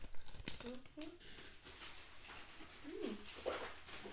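Chocolate-bar wrapper crinkling in the hands, with a sharp crackle about half a second in, and short hummed 'mm' sounds while tasting the chocolate.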